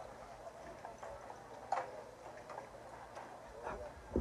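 Scattered light clicks and knocks, a sharper one near the middle, with faint voices in the background.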